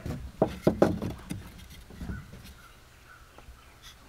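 Wooden boards knocking and clacking against each other as they are handled: several sharp knocks in the first second, a softer bump about two seconds in, then quiet handling.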